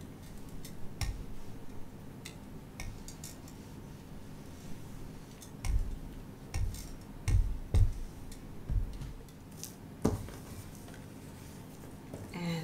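A hand iron being pressed across and handled on a wool pressing mat: scattered light clicks, then a run of dull knocks in the second half as the iron is moved and set down. A faint steady hum runs underneath.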